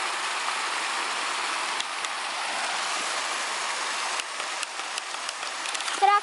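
Steady rush of running water, like a small waterfall or stream, with a few sharp clicks and taps over the last two seconds.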